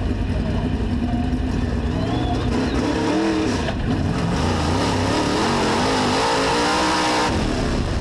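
Dirt-track race car engine heard from inside the car, its revs rising and falling again and again as the car works around the oval.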